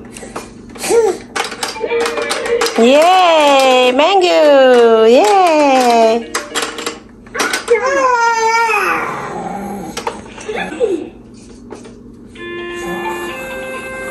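A baby vocalising loudly in drawn-out rising-and-falling wails, three in a row and then one more. A plinking electronic tune plays at the start and again near the end.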